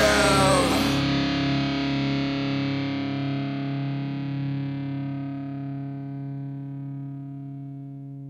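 End of a rock song: the voice and full band stop about a second in, leaving a sustained distorted electric guitar chord ringing out and slowly fading away.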